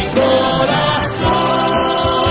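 Christian gospel song: a choir singing long, slightly wavering held notes over instrumental backing.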